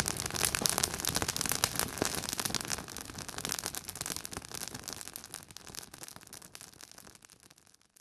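Small fire of dry grass and twigs crackling, a dense run of pops and snaps over a hiss that fades out over the last few seconds.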